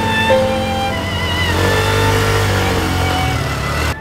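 A motor scooter engine running as two riders approach, under slow background music with sustained string tones.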